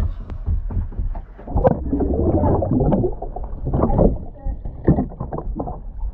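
Muffled sloshing and bubbling of water with scattered short knocks, picked up by a camera held underwater beside a boat's hull.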